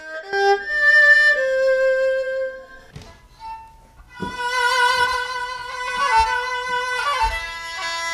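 Bowed notes on an erhu, the Chinese two-string fiddle, fading out about three seconds in. A second later kokyū music starts: a bowed Japanese fiddle playing a sustained melody over sharp, short attacks.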